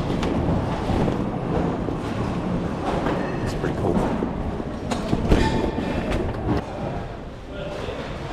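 Close handling noise from a large nylon duffel bag being rummaged and moved about, with scattered knocks and a sharp thump a little after five seconds in. A steady low rumble runs underneath.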